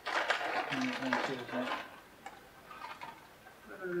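A crinkly chip bag rustling as it is handled and passed from hand to hand, loudest in the first couple of seconds, then a few faint rustles.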